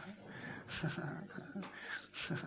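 Quiet, indistinct human voices, with a couple of short hissing sounds.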